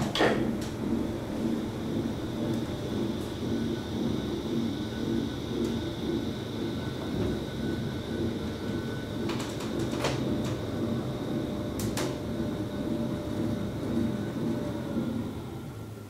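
ASEA traction elevator car, Otis-modernised, travelling down several floors: a steady ride rumble with a faint high whine. There is a sharp click just after the start and two more about ten and twelve seconds in, and the noise fades away near the end as the car slows to a stop.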